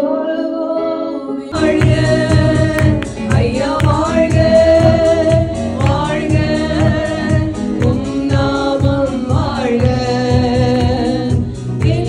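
Amplified Tamil Christian worship song: women singing into microphones with electronic keyboard accompaniment. About a second and a half in, the sound cuts to a fuller mix with a steady bass beat under the voices.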